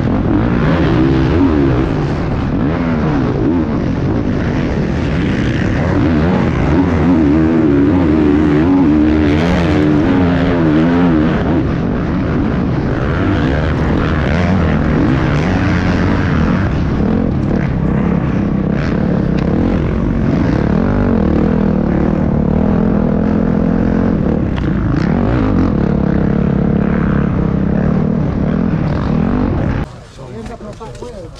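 Dirt bike engine at race revs, heard close up from the rider's own bike: a continuous loud drone whose pitch keeps rising and falling as the throttle opens and closes through the corners and jumps.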